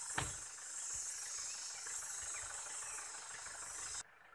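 A steady, high-pitched drone of insects in the forest, with a single short click soon after the start.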